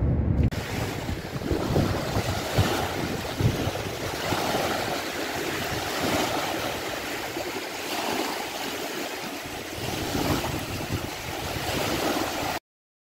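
Choppy lake waves washing against the shore and a wooden dock, swelling and easing about every two seconds, with wind buffeting the microphone.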